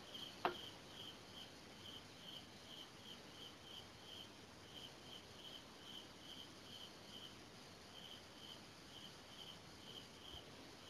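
Faint insect chirping: short, high chirps repeating steadily, about two to three a second. A small click sounds about half a second in.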